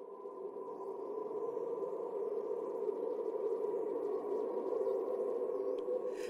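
Eerie ambient sound-design drone that slowly swells in loudness, with thin high wavering whistles gliding above it.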